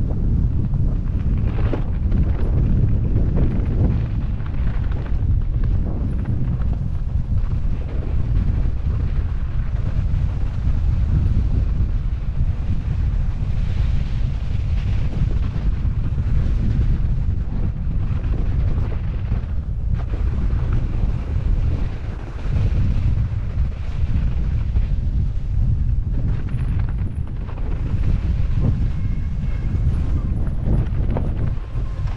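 Heavy wind buffeting the action camera's microphone as a mountain bike descends fast, mixed with the low noise of tyres rolling over snow and bare ground.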